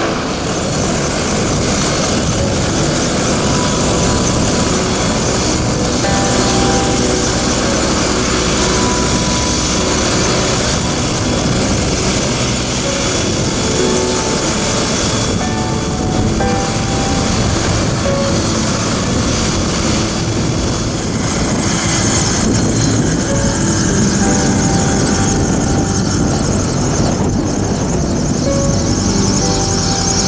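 Helicopter engine and turning rotor running steadily, with background music laid over it.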